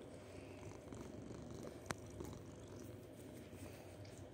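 A kitten purring steadily while being stroked, close up, with one sharp click about halfway through.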